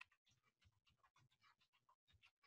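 Near silence with faint, irregular taps, about four a second, of a computer keyboard being typed on.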